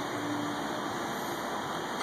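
Gas burners under the kettles of a stainless steel homebrew rig running with a steady rushing noise.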